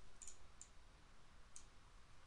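A few faint computer mouse clicks, short and sharp, over a quiet room.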